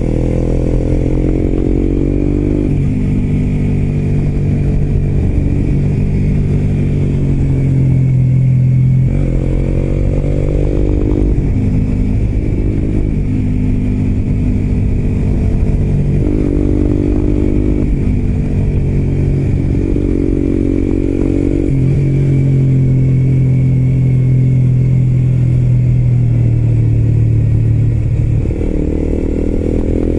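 Suzuki GSX-R125's single-cylinder four-stroke engine, breathing through an aftermarket muffler, heard close from the bike while riding. Its revs climb and drop again and again with the throttle and gear changes.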